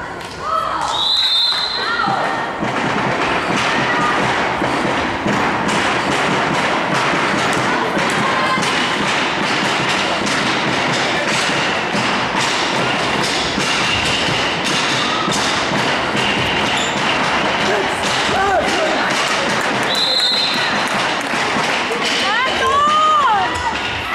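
Handball thudding as it is bounced and passed on a sports-hall floor, over a steady hubbub of voices from players and spectators. A few short squeaks of sports shoes on the floor.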